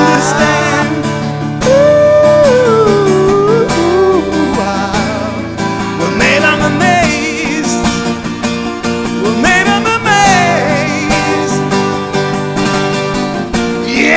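EKO +MIA 018 CW XII twelve-string acoustic guitar playing chords, with a man's voice singing a wordless, wavering melody over it.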